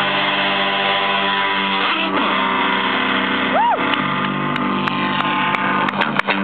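Live punk band's amplified electric guitars holding a loud, ringing chord, with a brief swooping tone that rises and falls a little past halfway.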